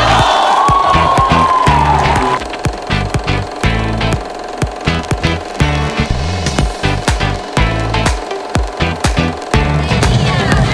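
Background music with a steady beat, strong bass pulses and sharp drum hits. A wash of crowd noise sits under it and cuts off about two seconds in.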